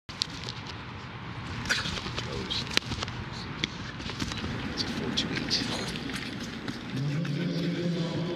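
Live indoor-stadium ambience from a broadcast: a steady wash of room noise with faint distant voices and scattered sharp clicks. A low steady hum comes in about a second before the end.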